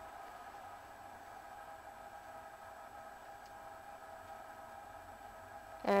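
Faint, steady background hum made of several high held tones, unchanging throughout.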